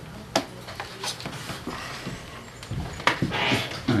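A few short, sharp knocks and taps as a laptop is set down on a wooden meeting table and handled, over a low room murmur; the strongest tap comes about three seconds in, followed by a brief hiss.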